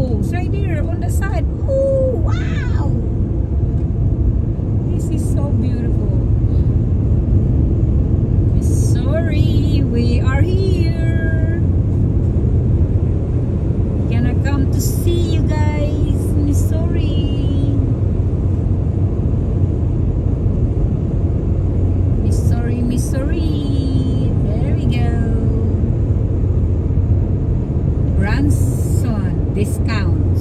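Steady road and engine rumble inside a car cabin at highway speed. High, gliding voices come and go over it several times, clustered around 1, 9 to 11, 15, 23 to 25 and 28 seconds in.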